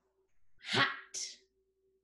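A woman saying the single word "hot" in a breathy, forceful voice, ending in a short hiss on the final t. A faint steady hum runs underneath.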